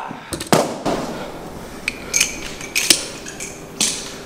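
Barbell being loaded by hand: bumper plates knocking and sliding on the steel sleeves. A heavy clank comes about half a second in, followed by three sharper metallic clinks.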